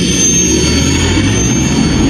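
Sci-fi spaceship engine sound effect: a loud, steady rumble with a thin high whine on top.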